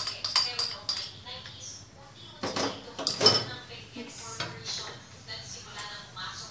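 A wooden spoon and bowl knocking and clinking against a steel pot as chocolate chips are scraped in, with two louder knocks about two and a half and three seconds in.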